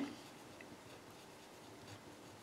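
Pen writing on paper: faint scratching of the tip as words are written out by hand.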